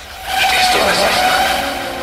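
Break in a hardtekk DJ mix: a sampled voice and sound effects over a held tone, rising in level about half a second in.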